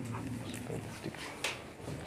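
Chalk tapping and scraping on a blackboard as a few characters are written, faint, with a sharp click about one and a half seconds in.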